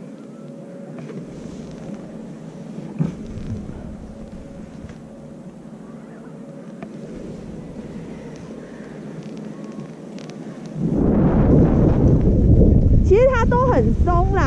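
Skis on snow at slow speed. About 11 seconds in, a sudden loud wind rumble on the helmet-camera microphone sets in as the skier starts down the slope and picks up speed. A wavering voice exclaims near the end.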